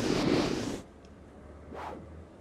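Cartoon whoosh sound effect of a character flying in to land, fading out under a second in, then a shorter, fainter swish near the end.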